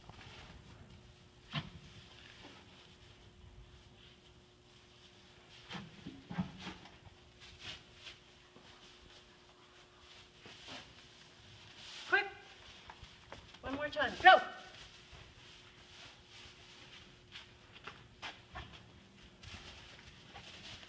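A dog working through loose straw bales: faint, scattered rustling of straw and light ticks of paws, over a low steady hum. A person calls out briefly twice, around twelve and fourteen seconds in, the loudest sounds here.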